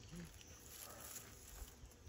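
Near silence: faint outdoor ambience with a short, faint pitched sound just after the start, a voice or an animal.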